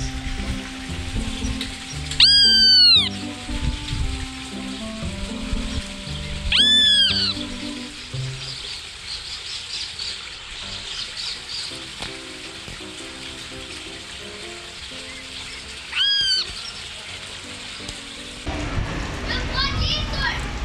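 Great kiskadee calling loudly three times, each call under a second, about two, seven and sixteen seconds in: the adult calling its fledglings out of the nest and warning of a person nearby. Background music plays under the calls, and children's voices come in near the end.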